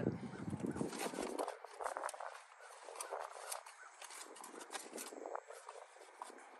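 Cardboard boxes and plastic packaging being shifted and rummaged through, with a run of light rustles, scrapes and small knocks.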